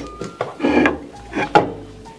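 A nativity-scene plaque being picked up and handled on a tabletop: a few short scrapes and knocks, about half a second apart.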